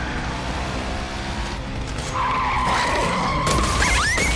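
Motorcycle engine running, then tyres squealing in a skid from about two seconds in, with the sound growing louder near the end.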